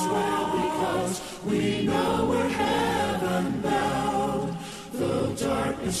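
A cappella choir singing a hymn in four-part harmony, pausing briefly twice between phrases.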